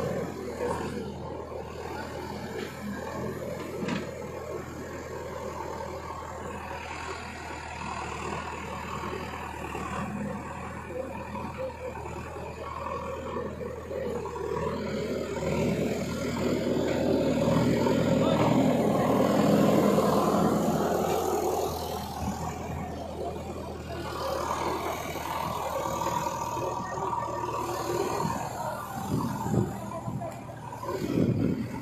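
Diesel engine of a backhoe loader running steadily, with a louder, rougher stretch about halfway through.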